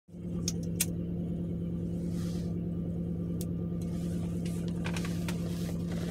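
Steady hum of a car running, heard inside the cabin, with a few light clicks.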